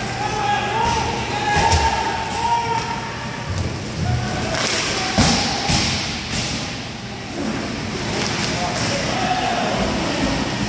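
Roller hockey in play: sharp clacks and thuds of sticks, puck and boards, a few of them a second or so apart around the middle, with players' shouted calls near the start and again near the end, in a large rink hall.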